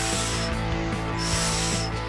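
Background music with two short bursts of hissing air, the second starting just over a second in.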